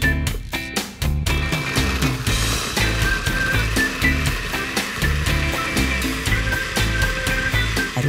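A countertop blender running steadily from about a second in, puréeing rehydrated New Mexico red chile pods with garlic, spices and chili water into a sauce. Background music with a steady beat plays over it throughout.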